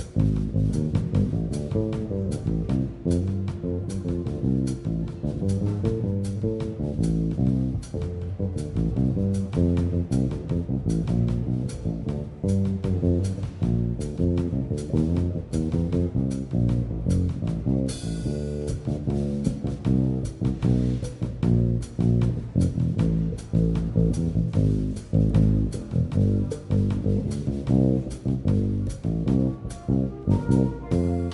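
Small jazz combo playing a bossa nova live, the electric bass carrying a busy line of plucked notes over the drum kit. A cymbal crash rings out a little past halfway.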